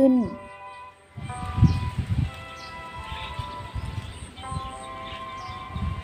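Soft background music of long held notes, with uneven low rumbling bumps from the outdoor recording that are loudest about a second and a half in, and a few faint high bird chirps.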